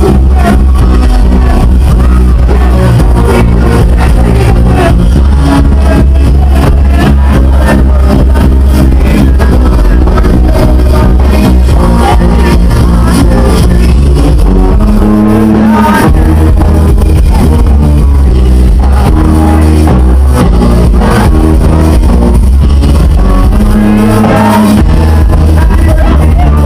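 Live dance music played loud through a club PA, with a heavy, steady bass line. The deepest bass drops out briefly about halfway through and again near the end.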